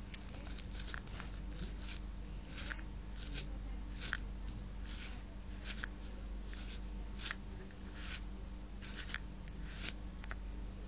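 Folded paper pistol rustling and crinkling as it is handled: short, irregular paper rustles, one or two a second, over a faint steady low hum.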